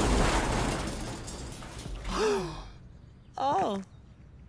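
The din of a collapsing pile of steel shipping containers dies away over the first two seconds. Then come two short dismayed vocal sounds, a falling 'oh' and a sigh.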